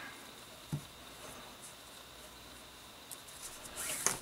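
Faint rustling and rubbing of paracord handled by hand as a knot is tied on a bracelet, with one soft bump about three-quarters of a second in and a few light scrapes near the end.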